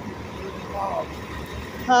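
City transit bus driving off from the curb past the camera, its engine giving a steady low rumble over street noise.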